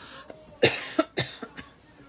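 A woman coughing: a quick run of four or five coughs starting just over half a second in, the first the loudest and the rest trailing off.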